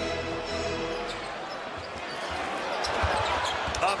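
A basketball dribbled on a hardwood court over arena background noise, a few low thuds about three seconds in. Held arena music tones cut off about a second in.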